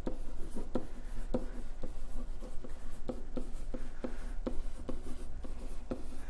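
Stylus writing on a tablet screen: irregular light taps and scratches, several a second, as handwritten letters are formed.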